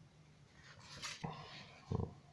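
Soft rustle of a page of a thin, old paper booklet being turned, about halfway through, followed by a short low sound near the end.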